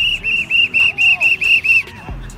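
Sports whistle blown in about eight quick short blasts, about four a second, each a shrill high tone. The blasts stop just before the end.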